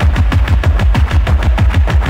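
Electronic music: a rapid, evenly spaced run of deep drum hits, several a second, each dropping in pitch, over heavy sustained bass.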